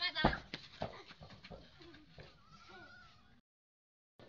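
A football kicked with a thump on a dirt yard, a second softer knock soon after, then faint children's voices and one high wavering call. The sound cuts out abruptly near the end.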